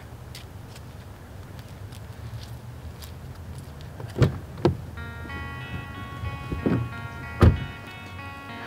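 A car door thudding three times: two thuds about half a second apart a little past midway, then a louder one near the end, over a low steady hum. Soft guitar music comes in about five seconds in.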